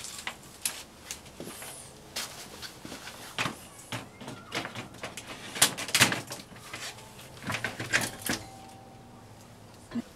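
Storm door being handled and set into an entry door frame: an irregular string of knocks, clacks and rattles of its frame against the casing, busiest about halfway through.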